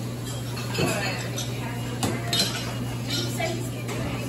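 Dishes and cutlery clinking in a busy restaurant kitchen, a few sharp clinks over a steady low hum and background chatter.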